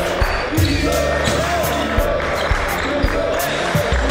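Background music with a steady drum beat and deep bass, a melodic line running over it.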